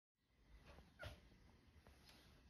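Near silence: faint outdoor background that fades in just after the start, with one short, sharp animal call about a second in.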